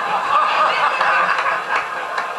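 A group of people laughing together at a punchline, a dense, continuous wash of laughter.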